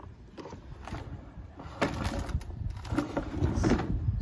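Plastic spin-mop bucket being handled: its pull handle and wheeled body are moved and tipped, giving scattered plastic clicks and knocks over a low rumble, the loudest about two seconds in.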